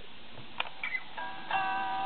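A couple of clicks from a small handheld recorder's buttons, then a recorded guitar riff starts playing back through its tiny speaker about a second in, thin and without bass.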